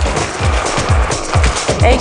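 Electronic dance music with a steady kick-drum beat, about two beats a second.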